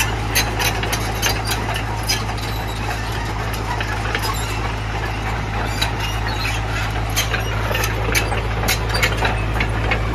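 JCB JS81 tracked excavator's diesel engine idling with a steady low hum, with frequent irregular sharp clicks over it.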